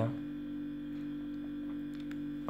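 Steady electrical hum, with one faint click near the end.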